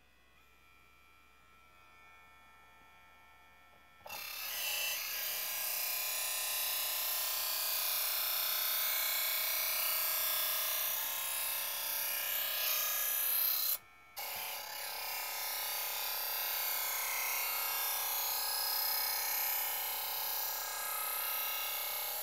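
Work Sharp E2 electric knife sharpener's motor running faintly, then a steel knife blade grinding against its spinning sharpening wheels in two long, steady pulls, the first about ten seconds and the second about eight, with a brief break between as the blade is switched to the other side.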